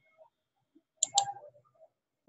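Two quick computer-mouse clicks, about a fifth of a second apart, a second in.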